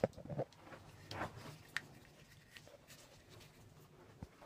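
Faint handling noises: a few light scrapes and clicks, mostly in the first two seconds.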